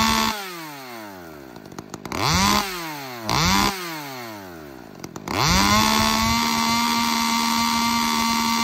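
Ported big-bore two-stroke chainsaw being revved in the air: its note falls away from a rev at the start, it is blipped twice more, each rise quickly dropping back toward idle, and from about five seconds in it is held wide open at a steady high pitch.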